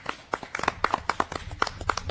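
Scattered hand clapping from a few people, an irregular run of sharp claps.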